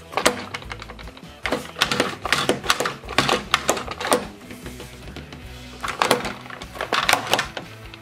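Hard plastic clicks and knocks, some in quick rattling runs, as the big arms of a plastic toy robot are moved and positioned by hand, over background music.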